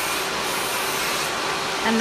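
Electric nail file running steadily, its sanding band grinding gel polish off a fingernail: a constant whirring hiss with a faint steady hum.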